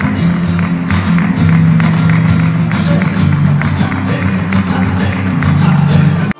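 Flamenco music: plucked guitar with sharp percussive strikes in a quick rhythm.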